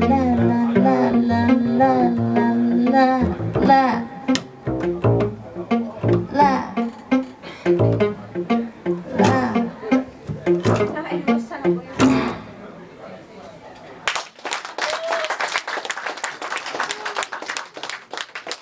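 Live jazz with a woman singing a long held note with vibrato over upright double bass and electric guitar, then a few closing plucked notes that die away. Audience applause breaks out about fourteen seconds in.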